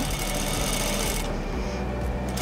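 Industrial sewing machine running at a steady pace, its needle stitching a plastic horsehair braid onto silk charmeuse.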